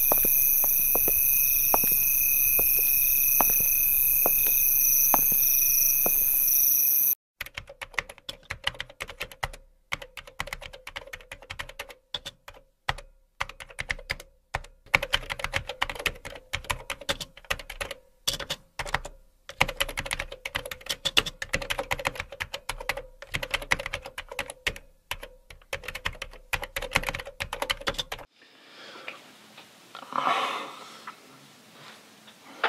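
Footsteps on pavement, about two a second, under a steady high-pitched whine; after a sudden cut, rapid typing on a computer keyboard, a fast run of key clicks with short pauses, which stops near the end.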